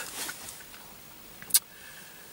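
Faint, steady background noise inside a car cabin, with one short, sharp click about one and a half seconds in.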